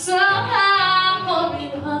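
A woman singing live, holding notes that bend in pitch, over strummed acoustic guitar.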